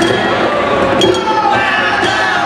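Live percussion ensemble playing, with clinking metallic strikes over a crowd's voices.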